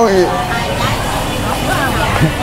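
A man's voice trails off at the start, then faint indistinct voices over a steady noisy rumble.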